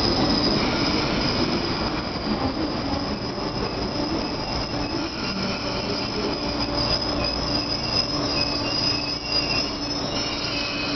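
MTR East Rail Line MLR (Metro-Cammell) electric multiple unit moving slowly along the platform. Its wheels squeal with a steady high-pitched tone over a low hum, and the hum grows stronger from about halfway.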